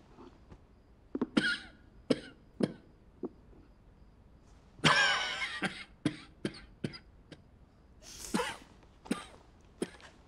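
A man coughing in a series of short, harsh coughs, the longest and loudest bout about five seconds in.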